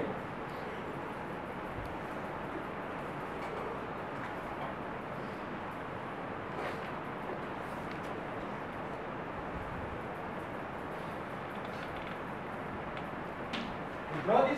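Steady hiss of room noise, with a few faint taps and scratches of chalk being drawn across a blackboard.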